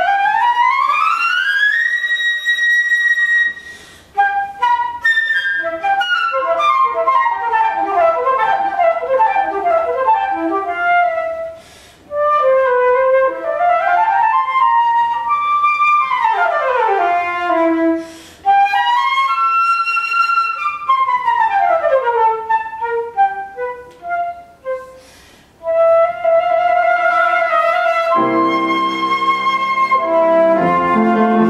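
Concert flute playing an unaccompanied passage: a quick rising run to a held high note, then fast scales and arpeggios sweeping up and down, broken by short pauses. Near the end a piano comes in underneath.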